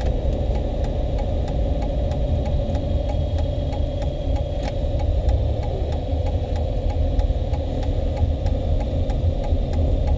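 A car engine running steadily, heard from inside the cabin as a low rumble with a constant hum. Faint regular ticks come about three times a second.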